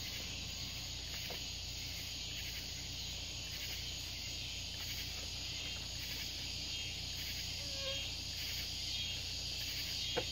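Insects chirping in a steady, high-pitched outdoor chorus.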